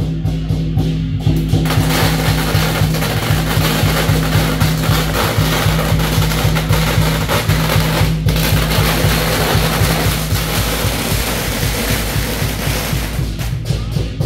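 Procession music: a steady low drone over a regular drumbeat. From about two seconds in until near the end, a dense, loud hissing noise covers it, with a brief break about eight seconds in.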